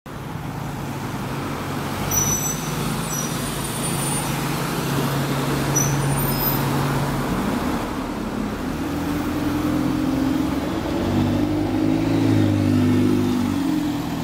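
Alexander Dennis Enviro 200 single-deck bus's diesel engine running at the stop, then pulling away and accelerating past, its engine note rising and loudest a few seconds before the end. A car drives past at the start.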